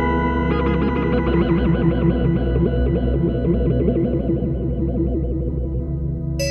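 Novation Summit synthesizer playing a fast run of short, plucked-sounding notes over a sustained low bass note. The quick notes start about half a second in, thin out toward the end and stop just before it closes.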